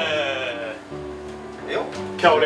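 A drawn-out, wavering vocal exclamation that trails off within the first second, over background music with steady held notes; a short vocal sound comes near the end.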